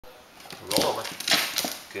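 Mostly speech: a person's voice speaking to a dog, ending with the start of "good".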